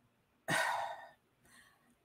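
A woman sighs: one breathy exhale about half a second in, starting sharply and fading away over about half a second.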